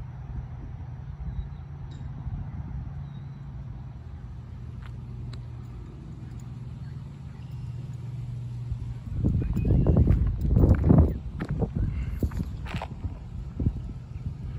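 A steady low hum, broken for about three seconds past the middle by loud, irregular low rumbling, with a few sharp clicks after it.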